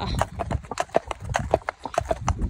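A bay traditional cob walking on a wet tarmac road, its hooves clip-clopping in an uneven run of several strikes a second.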